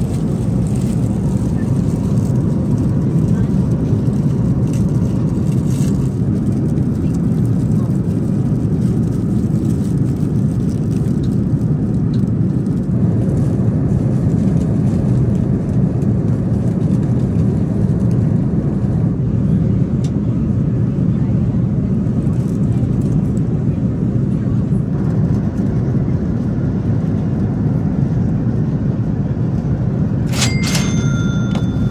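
Airbus A330-200 cabin noise in cruise: a steady low drone of engines and airflow that does not change.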